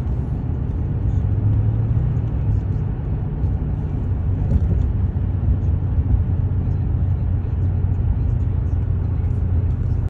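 A car engine running with a steady low rumble, which cuts off abruptly at the end.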